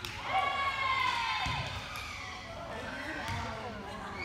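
Voices calling out and shouting in a gymnasium during a volleyball rally, with a dull thud of the ball about a second and a half in.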